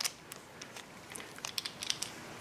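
Faint scattered clicks and light rustle of a GM HEI distributor's magnetic pickup assembly being handled and turned in the fingers, the clicks more frequent near the end.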